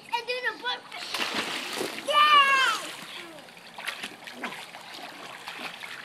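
Children splashing water in a pool, with a high child's voice in the first second and a loud child's squeal falling in pitch about two seconds in, then lighter splashing.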